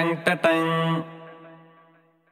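Ending of a Malayalam film song: a voice sings short rhythmic "ta-ta-ting" syllables over the accompaniment. Then the final note rings out and fades away about a second in.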